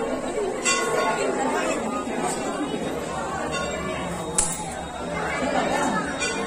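Dense crowd chatter of many voices in a packed temple, with a metal temple bell struck a few times at irregular intervals, each strike ringing briefly over the talk.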